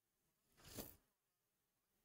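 Near silence, broken by one brief, faint noise that swells and stops a little under a second in.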